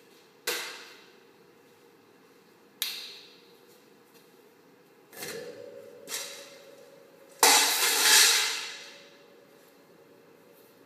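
Two sharp knocks echoing in a garage, then a louder, drawn-out clatter about seven and a half seconds in.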